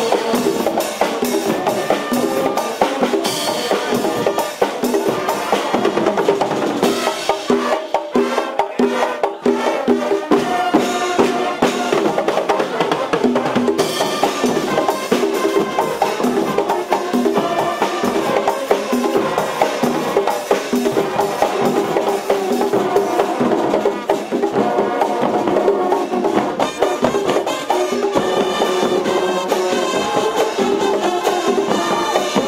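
Brazilian fanfarra (marching band) playing: trumpets carry the melody over marching drums, with the sustained brass notes and the drumming continuing unbroken throughout.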